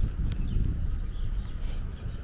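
Low rumbling of wind and handling noise on a handheld camera's microphone as it is swung about, with a few faint clicks.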